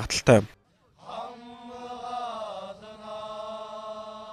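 Group of soldiers chanting in unison, one long held call lasting over three seconds, its pitch sliding down and then settling on a new note midway.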